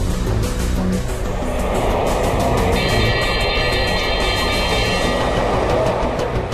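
Intro theme music with a long rushing noise swell that builds over the first seconds and holds, with a cluster of high steady tones in the middle, easing off near the end.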